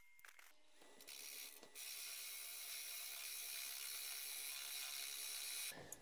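Laguna Revo 18|36 wood lathe spinning a cherry wood blank, a faint, steady mechanical whirr that comes in about a second in after a near-silent moment.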